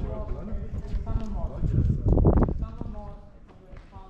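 Voices of people talking, with a few short knocks and a loud, rough burst of noise about two seconds in.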